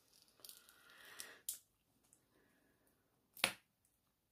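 Silicone mould being flexed and peeled away from a cured resin casting: a soft crackling rustle for the first second and a half, then a single sharp snap near the end.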